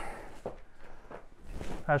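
Footsteps and shuffling on a wooden floor, with a few soft knocks, as people move about. A man's voice starts speaking near the end.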